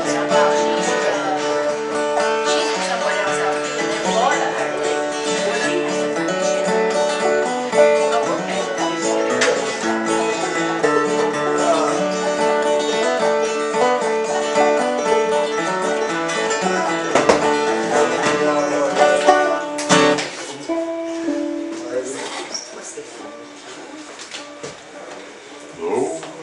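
Acoustic old-time string band playing a tune, banjo and guitar prominent, which ends with a final stroke about 20 seconds in; after that only quieter scattered notes.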